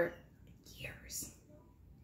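A woman's faint breathing in a pause between sentences: a short breathy exhale, then a quick hissing intake of breath.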